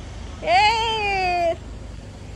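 Siberian husky giving one long whining howl, about a second long, rising slightly in pitch and then gliding down.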